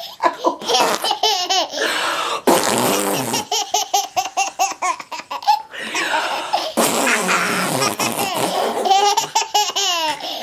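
Toddler laughing hard while being tickled on the belly, in quick repeated bursts of giggles with breathy gasps between.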